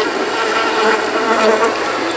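A steady electronic buzzing drone played through the small loudspeaker wired into an alien costume mask.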